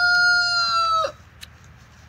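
A rooster crowing: the long held final note of the crow, steady in pitch, dropping away and ending about a second in.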